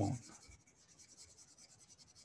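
Faint, light scratching and ticking of a stylus on a tablet as strokes are erased.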